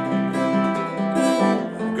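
Acoustic guitar strummed in a steady rhythm, with repeated strokes and held bass notes.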